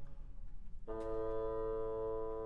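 Orchestra playing a classical-era overture: a phrase ends, there is a short near-pause, then a sustained chord enters just under a second in and is held.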